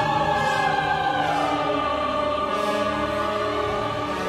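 Mixed choir singing full-voiced, sustained chords with a symphony orchestra; the voices slide down in pitch about a second in.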